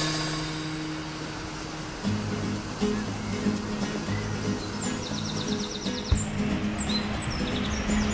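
Background music with long held low notes that change about two seconds in. Bird chirps and a quick trill sound over it in the second half.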